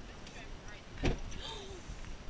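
Car driving along a road, heard from inside the cabin: a steady low rumble of road and engine noise. A voice speaks briefly about a second in.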